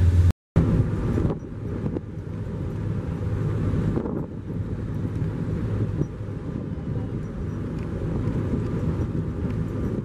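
Wind rushing over the microphone on the open deck of a moving ferry, over the steady low drone of the ferry's engines. The sound drops out for a moment just after the start.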